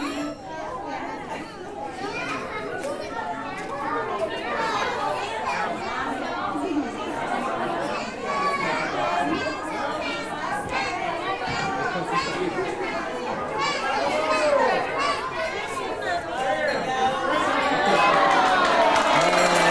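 Many overlapping voices of small children and adults chattering in a large room, with no single clear speaker.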